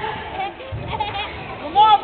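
Children shouting and calling out during a basketball game in an echoing gym hall, with one loud high shout near the end.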